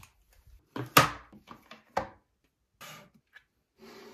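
Plastic and silicone fidget toys being picked up out of a box and set down on a shelf: a few short knocks, the loudest about a second in and another about two seconds in, with light handling rustles between.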